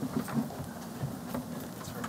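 A steady low electrical buzz, with a few faint clicks and knocks as an audio cable is handled and plugged into the laptop.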